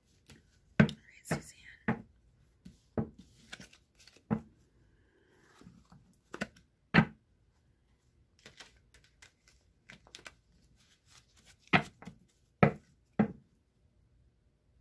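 Two decks of tarot and oracle cards being shuffled together by hand: irregularly spaced sharp slaps and taps of the cards, with the loudest ones about a second in, about seven seconds in and near the end.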